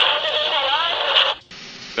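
Aircraft VHF radio transmission heard on a Learjet 35A cockpit voice recorder: a hissy, thin-sounding burst with a faint, unintelligible voice in it. It cuts off suddenly about one and a half seconds in, leaving quieter cockpit background noise.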